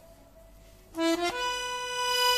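Moreschi piano accordion starting to play about a second in: a short note, then a held note, reedy with many overtones.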